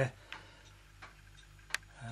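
Faint ticking in a quiet room, with one sharp click near the end.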